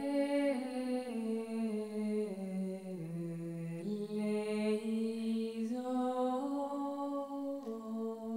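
A woman singing solo and unaccompanied: a slow melody of long held notes that step up and down, with no other instruments.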